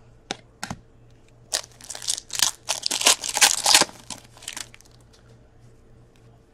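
Trading card pack wrapper being torn open and crinkled by hand: two light clicks, then about two and a half seconds of dense crinkling and tearing that tapers off into a few small ticks.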